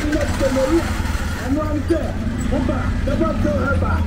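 People talking in a local language over the steady low rumble of a motor tricycle engine running.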